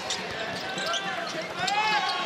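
Live basketball game sound in an arena: a ball bouncing on the hardwood over a steady crowd murmur.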